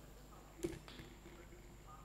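A single sharp click about two-thirds of a second in, then a lighter one near one second, over a faint steady hum.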